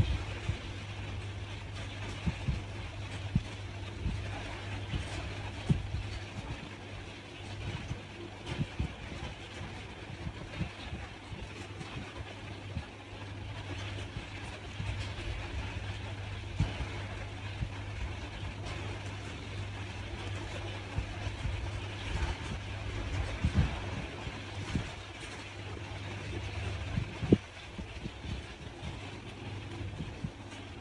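Steady low hum of background noise, with scattered soft knocks and one sharper knock about 27 seconds in, from hands handling yarn and a crochet hook on a tabletop.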